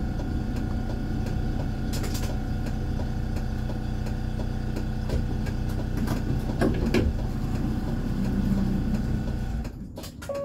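Steady hum of a tram's on-board electrical equipment, heard inside the tram, with several fixed tones and a few scattered clicks. The hum falls away suddenly near the end.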